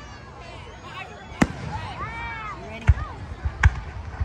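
Aerial fireworks shells bursting overhead: three sharp bangs, about a second and a half in, near three seconds and just before the end, the last two the loudest. People in the crowd talk in between.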